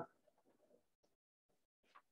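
Near silence, with a few faint short brushing sounds of a blackboard eraser wiping the chalkboard.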